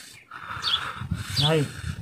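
Short high chirps repeating roughly every three-quarters of a second, a small bird calling in the background.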